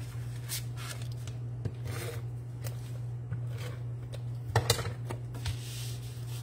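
Cardstock being handled and pressed together on a wooden tabletop: scattered rustles and light taps, with a couple of sharper knocks about four and a half seconds in. A steady low hum runs underneath.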